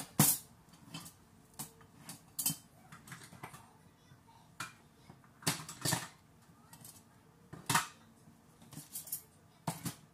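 Kitchen utensils and measuring cups clattering and clinking in irregular knocks as someone rummages through them, with a sharp clack right at the start and another near the end.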